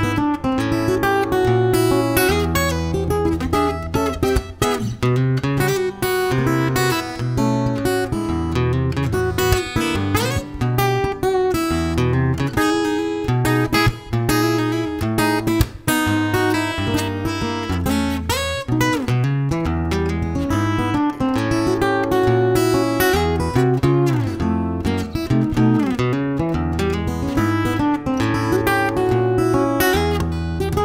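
Martin OMC PA4 steel-string acoustic guitar played solo fingerstyle: a steady thumbed bass line under quick picked melody notes in an upbeat country-blues tune.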